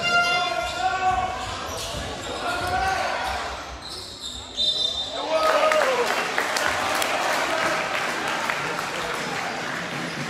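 A basketball bouncing on an indoor court, with short sharp strokes coming thick in the second half. Players and coaches shout across an echoing sports hall.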